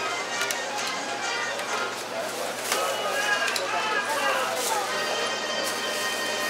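Busy supermarket checkout: background music with a steady pitch runs under the chatter of shoppers' voices, with light clicks and knocks as groceries are handled at the counter.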